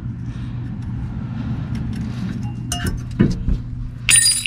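A few light metallic clicks and clinks about three seconds in as the rear brake caliper is worked off its bracket, over a steady low hum.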